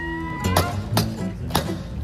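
A hammer strikes three times at a car wheel's anti-theft locking lug nut, about half a second apart, sharp metallic knocks while the nut is forced off. Background guitar music plays throughout.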